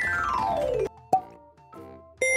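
Synthesized transition sound effect: a many-toned pitch glide falling steadily for just under a second, followed by a single short pop.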